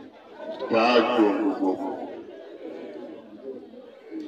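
A man speaking loudly for about a second near the start, over steady background chatter of a crowd.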